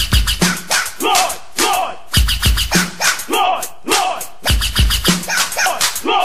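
Old-school hip hop dub mix from a vinyl 12-inch: repeated scratching with short falling sweeps, cut over a beat with a heavy bass hit about every two seconds.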